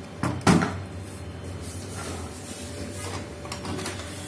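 Plastic housing of a Kyocera laser printer knocking against a wooden workbench as it is handled and set down: two knocks close together near the start, the second the loudest, then a few faint handling clicks.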